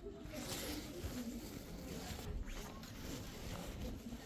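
Handling noise: cloth and skin rubbing and brushing over the camera's microphone in a run of irregular rustles as the camera is pushed about and swung around.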